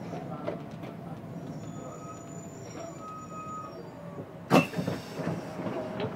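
City bus braking to a stop, heard from inside: a thin, high-pitched brake squeal through the middle, then a short, loud burst of noise about four and a half seconds in as the bus halts.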